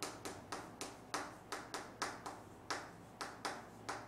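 Chalk tapping on a chalkboard as characters are written stroke by stroke: a quick, fairly even series of sharp taps, about four a second.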